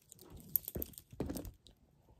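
Handling noise from a quilted handbag and its gold-tone chain strap: irregular rustling with several sharp light clicks in the first second and a half as the chain is worked through the hardware.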